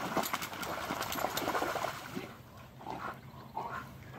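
Two dogs wading and splashing in shallow water, the sloshing busiest in the first two seconds, then settling into quieter, scattered small splashes and trickles.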